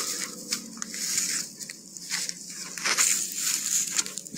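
Irregular rustling and crunching, like footsteps pushing through dry brush and undergrowth.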